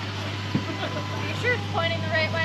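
Quiet background voices of people talking over a steady low hum.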